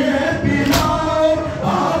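Group of men chanting an Urdu nauha lament in unison, with the sharp slap of many hands striking chests in matam a little under a second in, on a slow steady beat.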